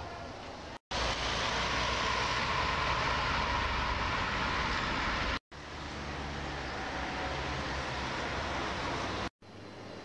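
Outdoor town ambience: a steady rushing noise with no distinct events, heard in three clips that each cut off abruptly, the second clip the loudest.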